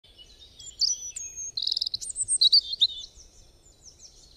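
Birdsong: chirps, whistled glides and a rapid trill, loudest around the middle and thinning out toward the end.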